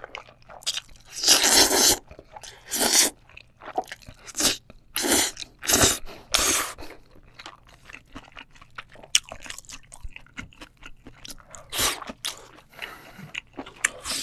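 Close-miked slurping of black-bean-sauce noodles and wet chewing of noodles and seafood. The longest, loudest slurp comes about a second in, several shorter ones follow over the next few seconds and another near the end, with quieter smacking and clicking chews between them.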